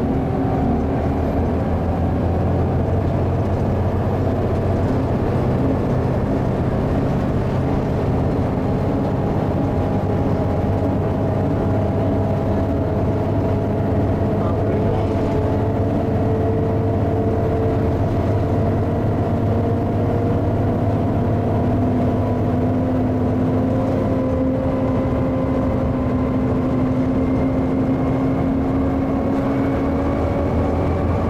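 Volvo B7TL double-decker bus's six-cylinder diesel engine and driveline running under load, heard from the upper deck as a steady drone with a whine, its pitch climbing slowly near the end as the bus gathers speed.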